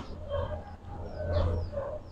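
Faint dog barking and yipping, short calls repeated every few tenths of a second.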